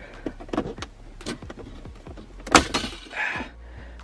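Plastic centre-console trim around a MK3 Ford Focus RS gear shifter being pried loose: a run of small clicks and creaks as its clips give, with one louder snap about two and a half seconds in.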